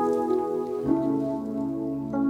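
Nord Stage keyboard playing slow held chords as a song's intro, changing chord about a second in.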